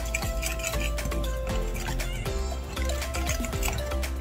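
Background music with steady held notes, over a wire whisk tapping and scraping through thick pancake batter in a glass bowl.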